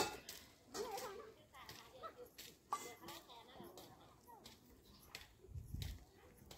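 Faint voices talking in the background, broken by a few light clicks and knocks.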